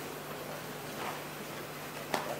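Room tone of a hall: a steady hiss with a low hum under it, and a faint rustle about a second in.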